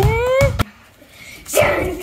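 A child's loud whoop rising in pitch, cut off about half a second in, with dull thuds of bare feet on the floor. After a short lull, children's voices start up again near the end.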